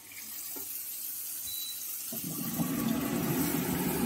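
Water poured from a saucepan into a steel kadai of frying potato-paneer masala, a steady splashing rush. It grows louder and fuller about halfway through as the water pools in the pan.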